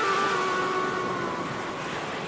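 Background film music: a single held note with overtones fades away over a steady hiss, in the lead-in to a song.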